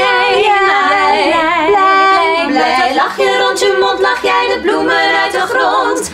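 A small group of women singing a cheerful pop melody together in harmony, unaccompanied, in a studio vocal take.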